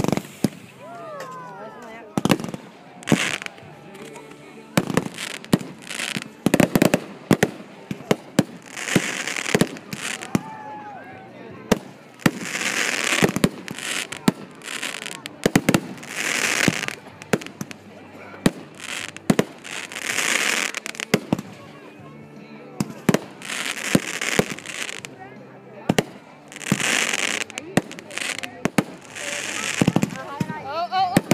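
Aerial fireworks going off: a long run of sharp bangs from shells bursting overhead, with several crackling bursts about a second long in between.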